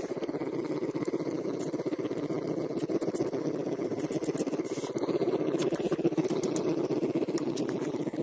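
Bear cubs suckling and humming: a steady, rapid, motor-like purr that gets a little louder about five seconds in.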